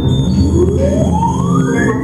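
Live electronic industrial music: a low droning bed with a pitched, siren-like electronic sweep rising steadily, and a second sweep starting near the end.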